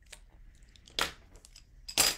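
Paper being handled on a tabletop: faint rustling, with a sharp tap about a second in and another at the end.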